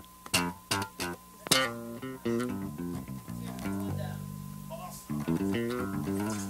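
Electric bass guitar overdub, plucked notes played along to a recorded rhythm guitar track. There are sharp guitar strums in the first couple of seconds and longer held bass notes about four to five seconds in.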